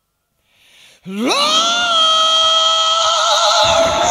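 Silence, then the opening of a 1980s hard rock track: about a second in, a single sustained note slides up in pitch and is held, taking on vibrato, and drums and bass come in just before the end.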